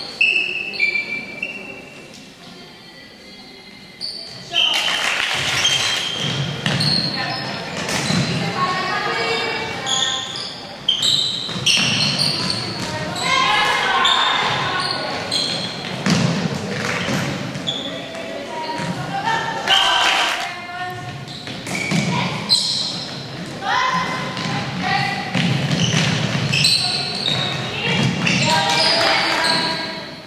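Indoor netball game in a sports hall: players' voices calling out across the court, echoing in the hall, with the ball bouncing and thudding on the floor now and then. A quieter stretch comes about two seconds in, before the calls pick up again.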